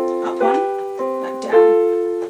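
Yamaha digital piano playing a slow run of right-hand chords that step up one note and back down. Three new chords are struck roughly half a second apart, each ringing on and fading as the next comes in.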